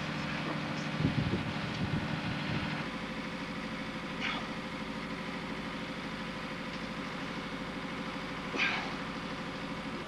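A steady low mechanical hum, like an engine running, whose low part changes about three seconds in. A few short, sharper sounds stand out above it.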